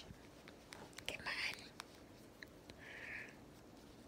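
Quiet handling sounds of needle and thread being worked at a knot in variegated embroidery thread: faint small ticks and a short soft hiss just before the end, with a breathy, half-whispered "come" about a second in.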